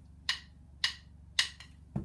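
Two wooden drumsticks clicked together four times at an even beat, just under two clicks a second, counting off the tempo for a beat.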